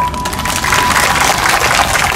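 Crowd applauding: a dense patter of many hands clapping, starting as the speech line ends. A thin steady tone runs under it for about the first second.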